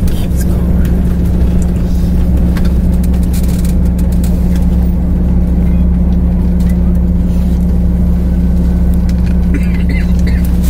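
Tour bus engine and road noise heard from inside the cabin while driving: a steady low drone.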